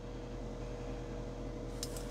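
Steady low room hum with a faint steady tone, and a couple of faint light clinks near the end as painted metal spoons are handled.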